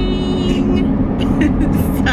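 Steady road and engine rumble inside a moving car's cabin. Over it, in the first second, a woman's voice holds one long sung note.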